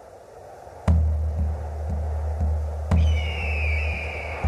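Electronic background music starting up: a soft hiss, then about a second in a deep bass beat comes in, pulsing about twice a second, with a falling synth tone after a second hit near the end.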